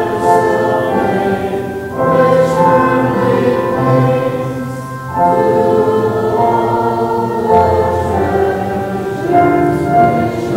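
A group of voices singing a hymn stanza in long held notes, pausing briefly between lines about two and five seconds in.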